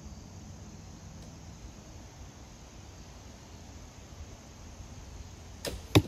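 A shot from an AF Ming Asiatic horsebow near the end: two sharp snaps about a third of a second apart as the string is loosed and the feather-fletched carbon arrow flies. The second snap is the louder one. Before the shot there is only a quiet, steady outdoor background.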